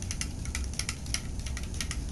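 A stirrer clicking and tapping against the inside of a drinking glass as salt water is stirred to dissolve the salt, a quick, irregular run of small clicks.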